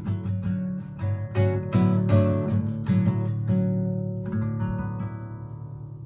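Nylon-string classical guitar played solo with the fingers, a run of plucked chords closing the song. A final chord about four seconds in is left to ring and fade.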